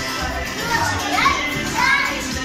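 Background music with children playing and shouting over it. There are two rising squeals in the second half.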